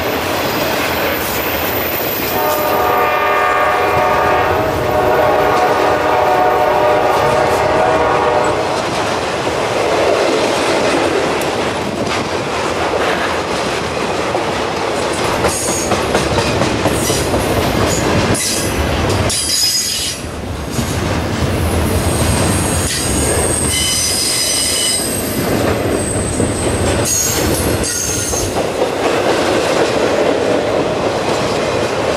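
Intermodal freight cars rolling past close by, with a steady rumble and clickety-clack of wheels over the rail joints. A multi-tone locomotive air horn sounds for about six seconds a few seconds in, and high-pitched wheel squeals come and go in the second half.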